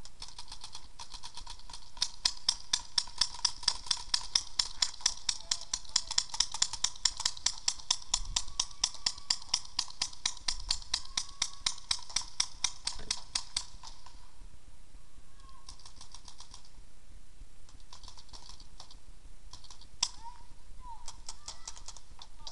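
Paintball markers firing: a long, even string of sharp pops, about five a second, for some fourteen seconds, then a few short bursts and a single loud shot near the end.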